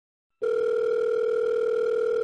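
Telephone ringback tone heard on the caller's line as an outgoing call rings: one steady, even tone starting about half a second in.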